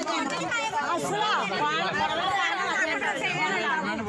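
Speech only: several people talking at once, their voices overlapping.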